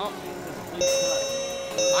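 Edited-in electronic chime sound effect: a steady, bright, bell-like ding about a second in, with a second ding just before the end, the kind of alert sound laid under a subscribe reminder.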